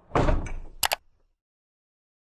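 Logo-animation sound effect: a short, loud noisy whoosh followed by two sharp clicks in quick succession, over about a second in.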